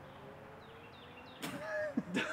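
Quiet outdoor air with a few faint, short falling bird chirps, then a person's voice breaks in about a second and a half in.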